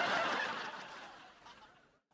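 Canned sitcom laugh track: a crowd laughing, fading away to silence near the end.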